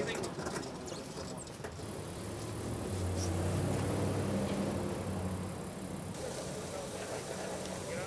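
Street sounds with a motor vehicle's engine humming close by, louder from about three seconds in and easing off after about six, and indistinct voices in the background.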